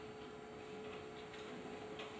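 Quiet pause in a hall: faint room tone with a thin, steady hum.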